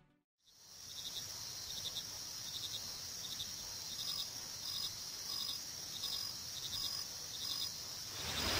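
Crickets chirping, a short pulsed trill repeating about every 0.7 seconds over a steady high insect buzz.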